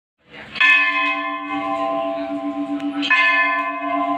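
Large brass temple bell struck twice, about two and a half seconds apart, each strike ringing on with a long, wavering hum.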